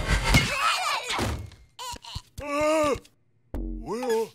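Cartoon slapstick sound effects: a hard impact as a soccer ball hits, followed by a short pitched voice-like cry that rises and falls, a moment of silence, then a dull thud.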